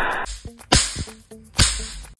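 Two sharp cracks, a little under a second apart, each fading quickly, over soft background music.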